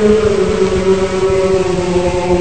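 Choir holding a long sustained chord in church chant, with a voice line sliding slightly down in pitch partway through.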